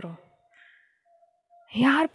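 A woman's speech trails off into a short pause with a faint soft breath, and her talking resumes near the end.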